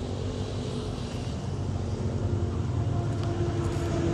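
An engine running steadily: a continuous low drone with no change in speed.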